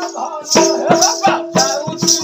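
Live Odia danda nacha folk music: a barrel drum beaten in a quick steady rhythm with jingling rattle-like percussion, over a held droning note and a bending melody line. It swells louder about half a second in.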